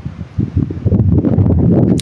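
Low wind noise buffeting a phone's microphone, growing louder about half a second in.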